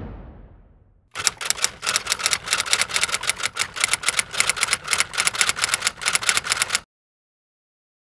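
A ringing music tail dies away in the first second. Then comes a rapid, even run of typewriter key clacks, about six a second, lasting nearly six seconds, which stops suddenly.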